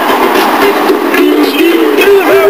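A high singing voice holding a long, wavering note over loud music with a steady beat of about two a second.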